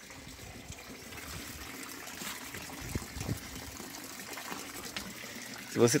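Running water, a steady even rush.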